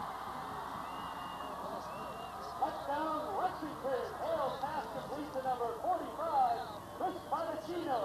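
Football crowd cheering after a touchdown: many voices shouting and whooping over each other, rising about two and a half seconds in over a steady background hiss.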